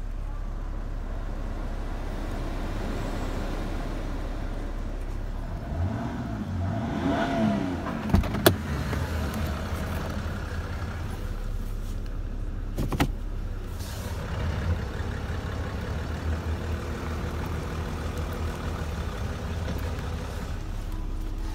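A car's engine idling with a steady low hum, heard from inside the car with the door open. A rising-and-falling swell comes about six to eight seconds in, followed by two sharp knocks, and there is another knock near thirteen seconds.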